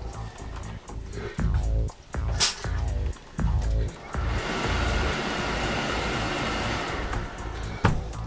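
Background music, with a sharp click about two and a half seconds in. About four seconds in, a steam iron gives a steady hiss of steam onto the fabric for around three seconds.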